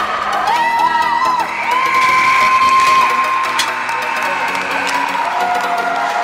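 Young hockey players cheering and yelling, with long drawn-out shouts in the middle, over background music.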